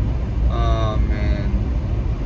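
Steady low rumble inside a car cabin with the engine running, under a short stretch of a man's voice about half a second in.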